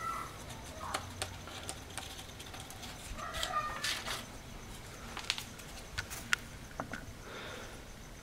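Quiet handling sounds: a sheet of paper and a small plastic bottle being moved about as fine zinc powder is tipped in, with a few light clicks and taps.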